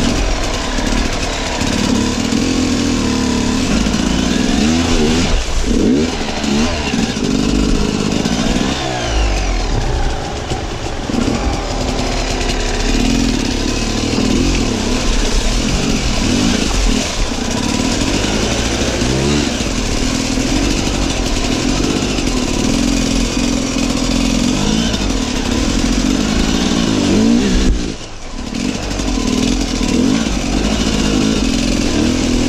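Sherco Six Days enduro motorcycle engine revving up and down as it is ridden through a shallow rocky stream, with water splashing from the wheels. The throttle comes off briefly a couple of seconds before the end, then the engine picks up again.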